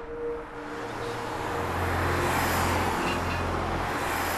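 Street traffic: a car passes, its engine and tyre noise swelling over the first two seconds and then easing off slightly.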